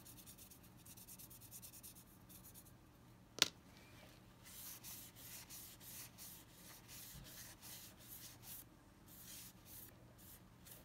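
Faint, quick repeated strokes of a paintbrush working brown paint over a sculpted polymer clay stick, with a paper towel rubbed over the surface in the second half. One sharp click about three and a half seconds in.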